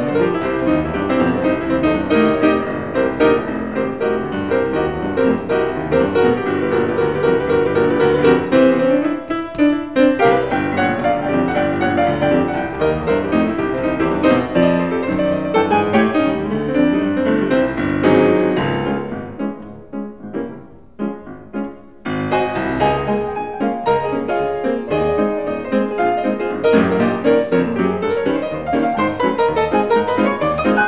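Solo Steinway grand piano playing an old-time piano tune, full chords and many quick notes. About two-thirds of the way through it drops to a few soft notes for a couple of seconds, then comes back in full.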